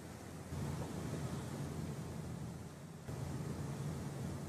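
Room tone: a steady low hum and hiss of background noise with no distinct event.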